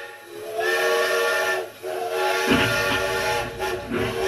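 Steam locomotive whistle blown in long blasts, a chord of steady tones over hissing steam. A low train rumble joins about two and a half seconds in.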